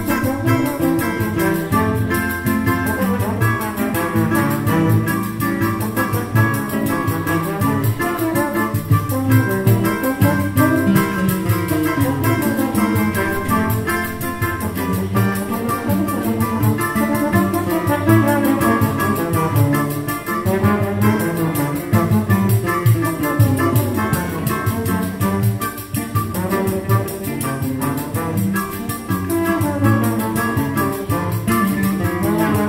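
A choro ensemble playing live: acoustic guitar and trombone with other wind instruments and a pandeiro, in a continuous instrumental piece.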